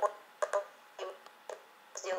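A video call's audio breaking up through a laptop speaker: about five brief clicks and clipped fragments of the remote woman's voice, the sign of a dropping internet connection.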